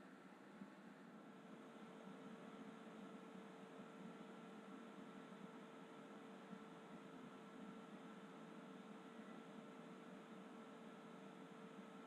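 Near silence: faint steady room-tone hiss with a faint steady hum.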